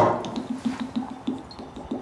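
Glass gin bottle knocked over onto a wooden table with a knock, then gin glugging out of its open neck in quick, even pulses, about seven a second, that fade out about halfway through.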